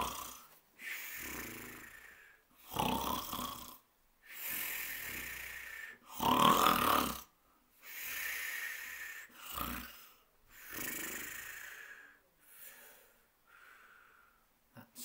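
A man doing mock snoring, as a storyteller acting out someone asleep. Rasping snored in-breaths alternate with long whistling out-breaths, about four or five cycles, and the loudest snore comes about six seconds in.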